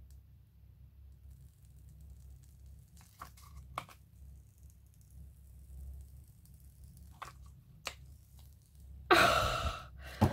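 Soft scattered creaks and rustles of a silicone mould being peeled off a cured resin tray, then about nine seconds in a loud, long exhale of relief after a held breath.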